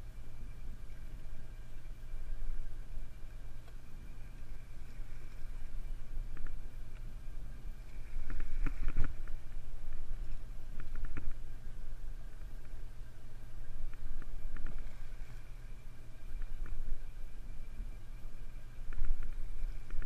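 Party boat's engine running steadily, a low drone with a few steady tones over it, with a few faint brief knocks about halfway through.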